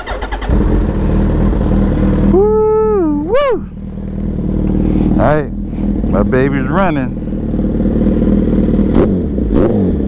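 An engine running steadily throughout, with loud shouts of long, sliding and wavering pitch over it, once between two and three and a half seconds in and again between five and seven seconds in.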